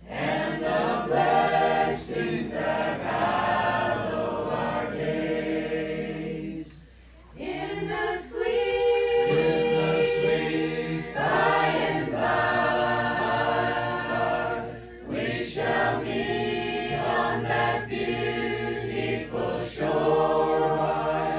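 A mixed group of men's and women's voices singing a hymn together a cappella from hymnbooks, in long held phrases with short breaks between lines about seven and fifteen seconds in.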